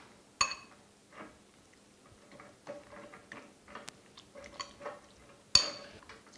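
Metal spoon stirring a thick tuna and yogurt mixture in a glass bowl: soft, irregular scraping and tapping. Two sharp, ringing clinks of spoon against glass, one about half a second in and a louder one near the end.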